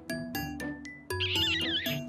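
Edited-in comic sound effects: a few quick plucked-sounding notes stepping from one pitch to the next, then, about a second in, a wavering high warble over a low steady tone.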